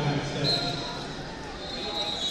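Distant voices echoing in a large sports hall, with a brief high-pitched tone about half a second in.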